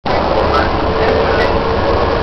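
Electric DART light rail train running along the track, heard from inside the front cab: a steady rumble and track noise with a faint steady whine.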